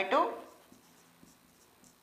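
Faint short strokes of a marker pen writing on a whiteboard.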